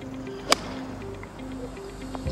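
A single sharp crack of a golf iron striking the ball, about half a second in, over background music with held notes.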